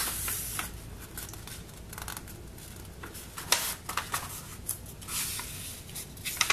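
A sheet of paper being handled, slid and folded in half: irregular rustling and crinkling, with a sharp crackle about three and a half seconds in.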